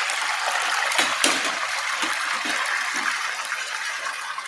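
Hot cooking oil sizzling steadily in a pan as pieces of food shallow-fry, with a couple of sharp crackles about a second in.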